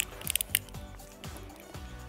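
Background music, with a few short, sharp clicks in the first half second as a soft baked tuna and sweetcorn muffin is bitten into and chewed.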